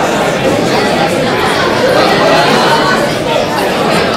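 Steady babble of a large crowd talking at once in many small groups at tables, filling a big hall with overlapping voices and no single voice standing out.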